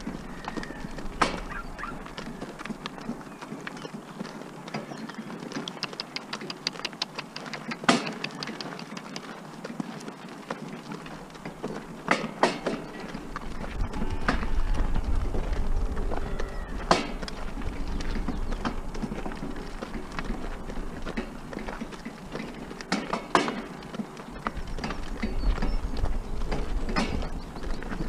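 Pony walking in harness, pulling a cart along a gravel track: hooves and wheels crunch on the stones, with scattered sharp knocks and rattles from the cart. A low rumble comes and goes from about halfway.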